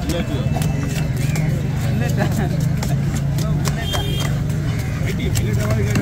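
A knife scraping and cutting a large fish on a stone block, heard as a run of short sharp scratchy clicks. Under it are a steady low engine hum and background voices.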